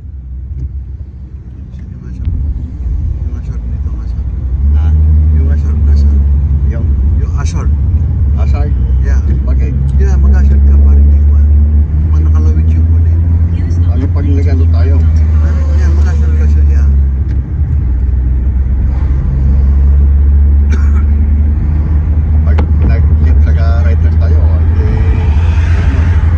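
Road and engine noise of a moving car heard from inside the cabin: a steady low rumble that builds over the first few seconds as the car gets up to speed, with scattered short clicks and knocks.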